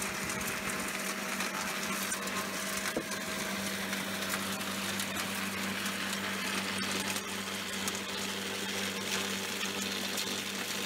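Garden wood chipper running steadily with a constant hum, grinding a load of acorns into small chips, with a dense patter of small clicks as the nuts are chopped.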